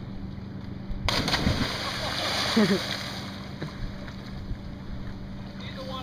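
A person jumping off a roof into a lake: a sudden splash about a second in, followed by a few seconds of splashing water, with laughing voices.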